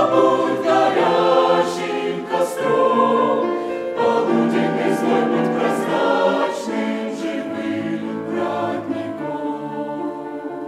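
Mixed choir of men's and women's voices singing a Russian hymn in held chords, growing gradually quieter over the last few seconds.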